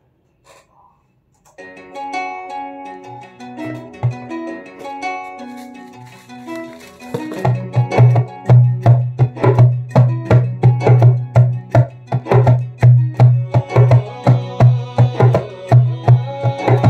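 After a brief hush, an instrumental intro of soft, held melodic notes plays; about seven seconds in, a djembe joins with hand strokes in a steady groove of roughly four beats a second over a sustained low tone.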